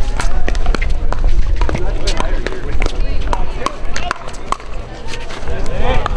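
Pickleball paddles striking the hollow plastic ball: a string of sharp pops from this and neighbouring courts, with people's voices around them.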